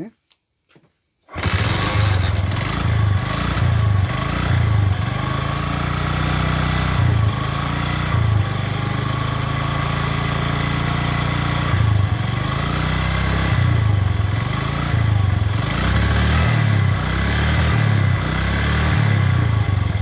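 Honda Eterno scooter's four-stroke engine running after a short silence, its sound beginning abruptly about a second in and running on steadily with a low, slightly uneven pulse. There is no timing-chain noise in it despite more than 100,000 km of use.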